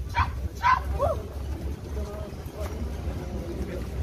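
A dog barking twice in quick succession, then giving a short yelp about a second in, over a steady low rumble.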